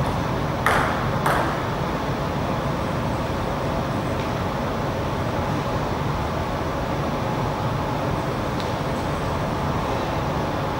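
Two sharp clicks of a table tennis ball, close together just under a second and just over a second in, as a rally ends. After them there is only a steady background hum.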